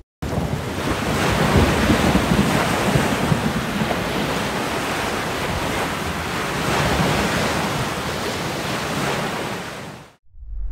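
Ocean waves and wind: a dense, steady rushing of sea and gusts that swells a little twice, starting abruptly and cutting off near the end.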